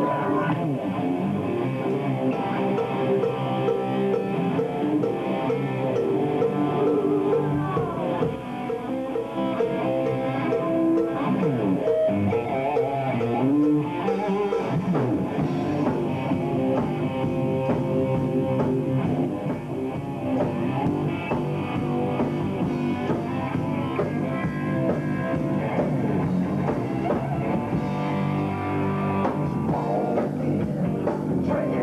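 Live rock band playing: distorted electric guitar over a drum kit, at a steady driving beat.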